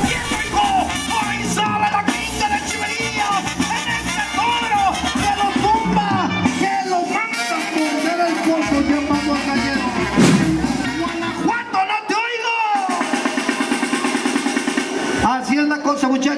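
Mexican brass band (banda) music with tuba and brass playing a lively tune, with drums and some singing or voice.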